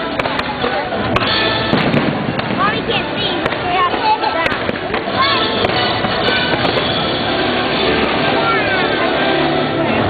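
Fireworks bursting and crackling, with sharp cracks scattered through, over loud show music and crowd voices.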